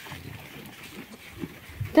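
Goats chewing and pulling at freshly cut grass in a wooden feeder: quiet, irregular rustling and munching.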